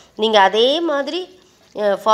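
A woman's voice narrating, with a short pause in the middle; no frying or other sound stands out beside the speech.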